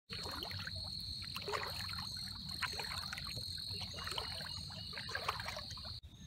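Shallow tidal water trickling and gurgling over a flooded marsh path, many short bubbling notes one after another, over a steady high-pitched whine.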